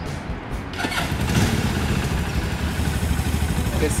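A motorcycle engine idling.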